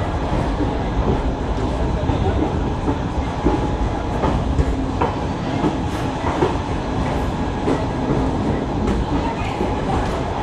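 Express passenger coach rolling slowly out of a station: a steady rumble of wheels on rail, with irregular clicks and knocks as the wheels cross rail joints and points.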